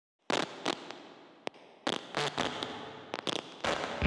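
A string of about ten sharp cracks and snaps at irregular intervals, each with a short fading tail, like a burst of firecrackers or crackling sparks: produced sound effects opening a logo intro.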